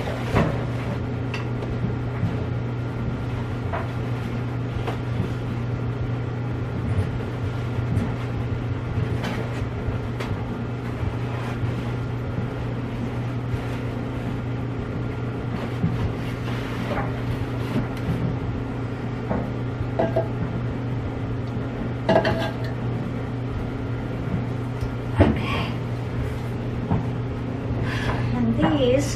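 Laundry supplies being handled in a fabric storage bin and on top of a washer and dryer: scattered light knocks, clicks and rustles of plastic containers being moved and set down, with a sharper knock about 25 seconds in. A steady low hum runs underneath throughout.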